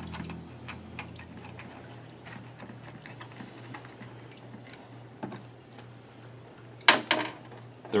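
Faint scattered clicks and light handling noise from fingers turning the thumb screws of a multi-pin cable connector on an ultrasonic flaw detector, over a low steady hum. A louder short clatter comes about seven seconds in.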